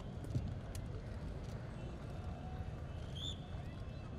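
Faint open-air ambience: a steady low rumble with a few soft clicks, and a brief high chirp about three seconds in.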